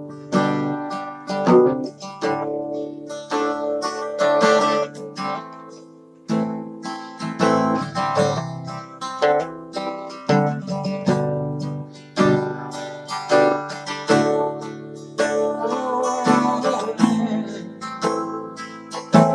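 A solo acoustic guitar strumming chords in a steady rhythm, playing the instrumental intro of a song before any singing comes in.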